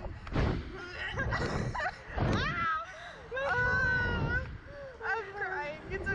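Two women laughing and squealing on a swinging slingshot ride, their high voices rising and falling throughout, with bursts of wind rumbling on the microphone as the capsule swings.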